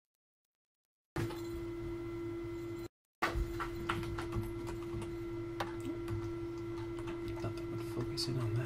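Complete silence for about a second, then a steady electrical hum at one pitch that drops out briefly about three seconds in, with a few faint clicks over it.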